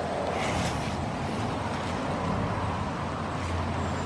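Steady outdoor background noise, an even rush with a low hum that grows stronger in the last half second.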